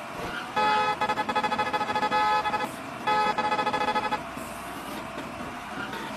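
Vehicle horn sounding in two long blasts, the first about two seconds and the second about one second, over steady traffic and engine noise from a highway driving game.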